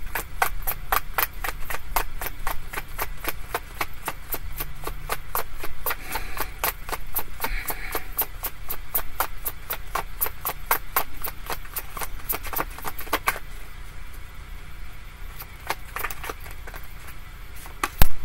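A deck of tarot cards being shuffled in the hands: a fast, even run of light card clicks, about five a second, that stops about thirteen seconds in, followed by a few scattered clicks.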